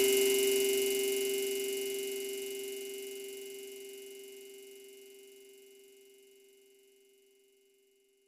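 The final note of a funk track: a single held synthesizer tone left ringing after the beat cuts off, fading out evenly to silence over about four and a half seconds.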